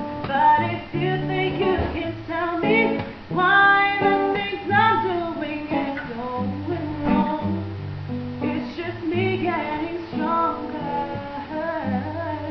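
A woman singing a song, accompanied by an acoustic guitar.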